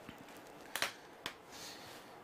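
A few faint sharp clicks in a quiet room: two close together a little under a second in, then one more about half a second later.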